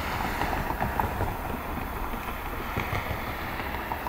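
Steady low outdoor rumble with a few faint clicks.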